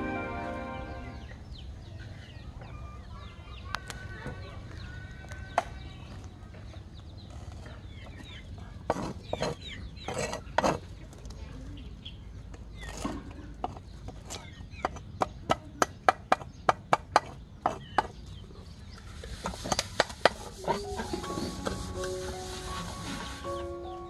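A cleaver chopping fish on a wooden chopping board: scattered sharp knocks, then a quick steady run of about ten chops, roughly three a second, in the second half.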